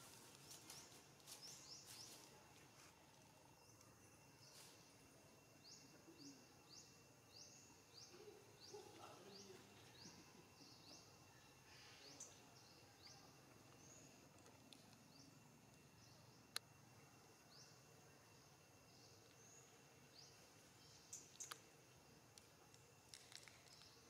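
Near silence: faint outdoor ambience with short high rising chirps repeated about twice a second and a steady high whine, broken by a few sharp clicks.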